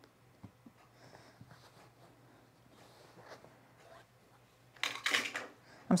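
Faint rustling of linen fabric and a few light taps as hands smooth the fabric and move tools on a cutting mat, with a louder rush of noise about five seconds in.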